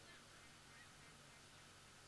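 Near silence: faint steady background hiss and low hum.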